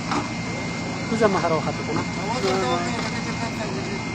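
Steady hum of a machine running at a water-well drilling rig, with a faint steady whine over it, and people talking in the background.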